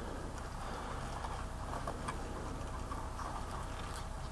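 Faint handling noise: a few soft ticks and rustles from gloved hands working a guidewire and catheter, over a low steady room hiss.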